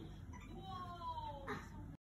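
A young child's high-pitched, meow-like vocal sound: one drawn-out tone that slowly falls in pitch for about a second, followed by a short, sharper sound near the end.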